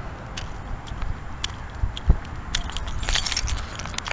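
Footsteps on a paved path with carried keys jingling, loudest about three seconds in, over the low rumble of wind on the camera mic.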